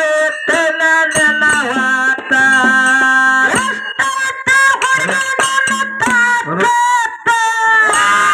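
Amplified folk singing in Kannada, voices holding and bending long notes over steady harmonium tones, heard through a PA system.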